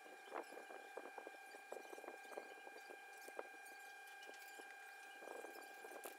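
Faint, irregular clicks and light clinks of small metal RC differential gears and shafts being picked up and handled on a tabletop, with a steady faint hum underneath.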